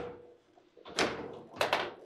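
Foosball table in play: sharp, hard knocks of the ball, the plastic figures and the rods. One knock comes at the start, the loudest about a second in, and two more close together a little later.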